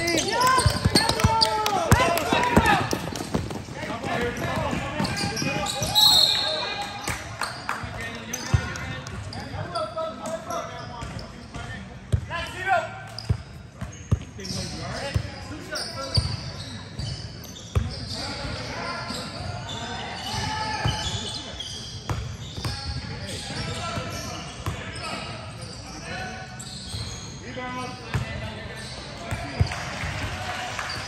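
Basketball bouncing on an indoor gym court in a large echoing hall, with players' and spectators' shouts. About six seconds in comes a short, shrill blast from a referee's whistle.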